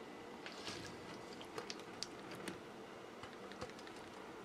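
Faint scattered clicks and soft squishing as cooked vegetables (onions, peppers and mushrooms) are scraped out of one pan into a frying pan of meat sauce.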